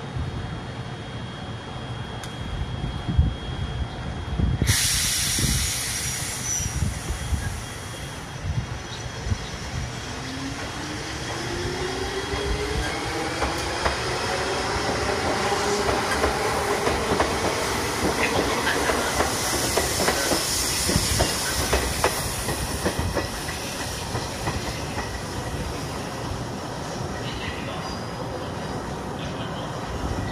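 Izuhakone Railway 3000-series electric train pulling out of the station. A hiss of air starts about five seconds in, then the traction motors whine, rising steadily in pitch as the train gathers speed. The wheels clack over the rail joints as the cars pass.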